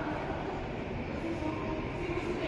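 Steady low rumble of ambient noise inside a large airport terminal hall, unbroken and even in level.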